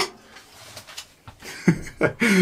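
A lull after hand filing stops, with a few faint taps; about a second and a half in, a man starts to laugh.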